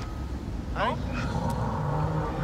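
Several film soundtracks playing at once: a steady low rumble runs under short snatches of dialogue, with a brief falling voice-like cry just under a second in.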